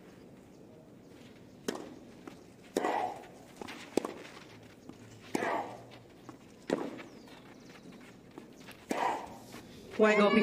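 Tennis rally on a clay court: six racket strikes on the ball, roughly one every second or so. A player grunts with three of the shots.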